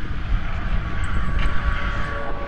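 Cinematic trailer sound design: a loud, low rumbling drone with a hiss swelling above it, and faint steady tones coming in about halfway through.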